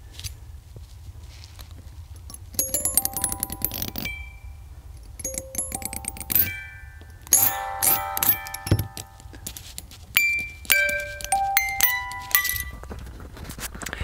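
A small cylinder music box movement playing: pins on the turning drum pluck the tuned steel comb, each pluck a sharp click followed by a ringing note. The notes start about two and a half seconds in and come in uneven clusters of chimes with short gaps, stopping shortly before the end.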